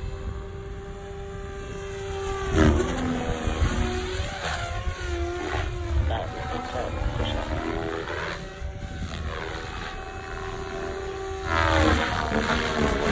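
SAB Goblin 500 Sport electric RC helicopter in flight, its rotor and motor whine sweeping up and down in pitch as it manoeuvres and passes. It is loudest about two and a half seconds in and again near the end, over a low rumble.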